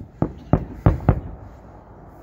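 Aerial fireworks bursting: four sharp bangs in quick succession in the first second or so, then only a low background.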